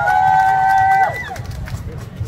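A man's voice through a PA holding one high "woo"-like vocal call for about a second, sliding up into the note and dropping off at the end, followed by low crowd and stage noise.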